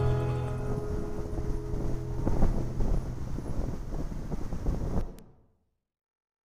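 The last chord of a karaoke backing track fading away, followed by irregular rumbling and knocking noise on the phone's earphone microphone. The recording cuts off abruptly about five seconds in.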